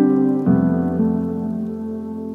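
Background music: slow, sustained chords, with a new chord about half a second in that fades away.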